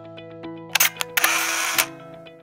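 A camera shutter sound effect over soft sustained music: two quick clicks a little under a second in, then a longer noisy burst that ends in a click near the end.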